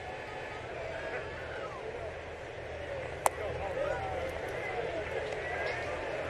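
Ballpark crowd murmur with scattered distant voices, broken once about three seconds in by a single sharp pop: a pitch smacking into the catcher's mitt.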